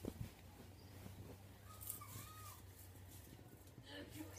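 Near silence in a room: a steady low hum, a couple of soft bumps from the phone being handled at the start, and one faint short call that rises and falls about two seconds in.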